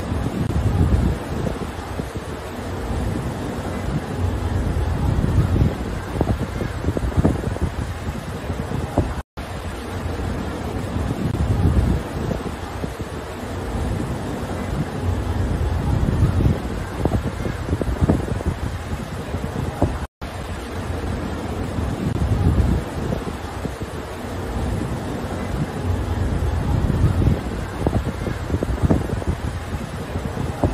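Wind buffeting the microphone in uneven gusts over the rushing water of a ship's wake. The sound cuts out for an instant twice, about eleven seconds apart.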